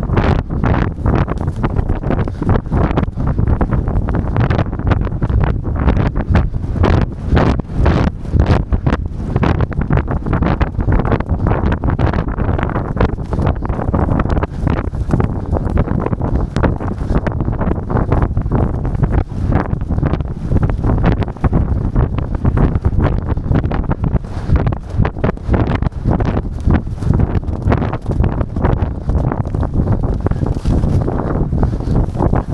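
Loud wind buffeting the microphone of a jockey-worn camera on a galloping racehorse: a heavy, steady rumble broken by frequent irregular thumps and knocks.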